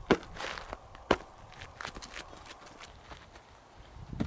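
Boots of a squad of fighters on packed dirt: two sharp stamps about a second apart, then quieter scattered footsteps.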